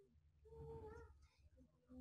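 Near silence, with one faint, short animal call about half a second in, held on a steady pitch for about half a second.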